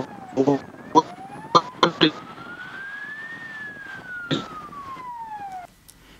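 A siren wailing in one slow rise and fall of pitch, heard over a breaking-up video-call line with clipped fragments of a man's voice. The sound cuts off suddenly near the end as the connection drops.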